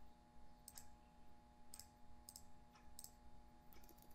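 Faint computer mouse clicks, a handful spread over a few seconds, against a low steady hum.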